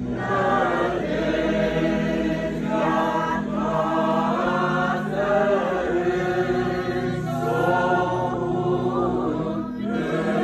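A group of voices singing an Orthodox hymn together over a steady low held note, with short breaks between phrases.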